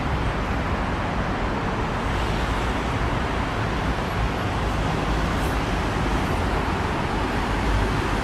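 Steady hum of city road traffic heard from high above the street, an even wash of noise with a deep low rumble.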